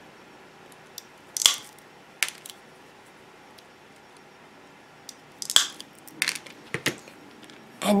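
Wheeled mosaic nippers cutting small glitter tiles: a series of sharp snaps and clicks as the tile breaks into little pieces, the two loudest about a second and a half in and five and a half seconds in.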